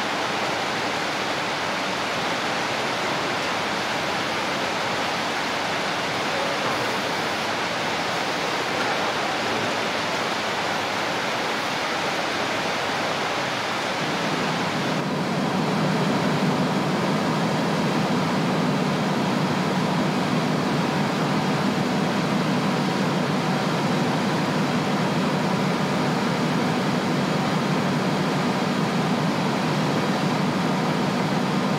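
Steady din of factory machinery, overhead conveyors and a press running, with a deeper hum joining about halfway through.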